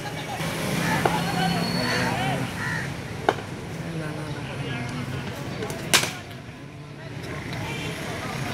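Voices calling across an open cricket ground, with sharp cracks of ball on cricket bat. The loudest crack comes about six seconds in; smaller ones come about one second and three seconds in.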